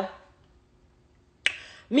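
A single sharp click about one and a half seconds in, followed by a short breathy hiss, in a pause between spoken phrases.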